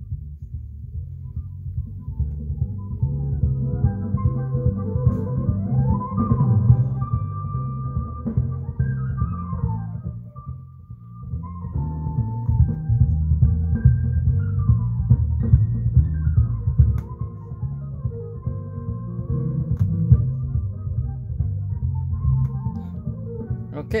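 Recorded music played through a car-audio subwoofer channel low-passed by an electronic crossover: mostly deep, beat-driven bass with the melody only faint above it. The level dips briefly about ten seconds in.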